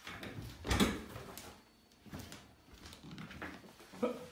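Handling and movement noises: rustling and shuffling, with one sharp knock just under a second in and a few smaller bumps after it.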